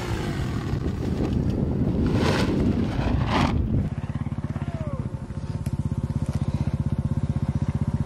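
Dirt bike engine running hard with rushing air for about four seconds. After that comes a steady, fast-pulsing low drone.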